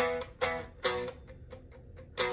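Les Paul-style electric guitar strummed in three short chord strokes within the first second. The last chord is left to ring and fade.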